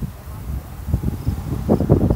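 Faint, short, high chirps of insects repeating about twice a second, over a low, uneven rumble of wind on the microphone.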